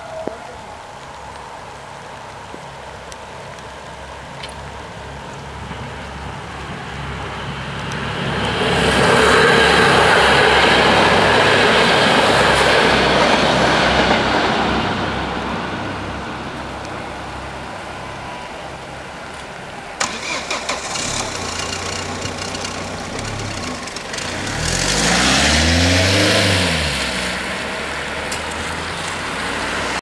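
Level-crossing traffic on a wet road: a long loud swell of rumbling noise for several seconds while the barriers are down, typical of the regional train passing. Later, after the barriers lift, a car drives over the crossing close by, its engine note rising and then falling as it passes.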